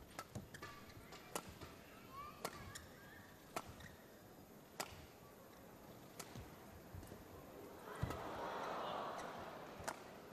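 Badminton rally: racket strings striking the shuttlecock in sharp cracks about once a second, with brief shoe squeaks on the court around two to three seconds in. A louder hit about eight seconds in is followed by a swell of crowd noise lasting a second or so.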